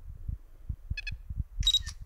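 Wind buffeting the microphone in uneven low thumps, with a brief high beep about a second in and a short hissy chirp near the end.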